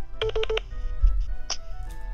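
Telephone calling tone as an outgoing call is placed: a short burst of rapid pulsing beeps about a quarter second in, over background music.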